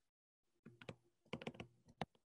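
Faint clicking at a computer: two short clusters of three or four quick clicks, otherwise near silence.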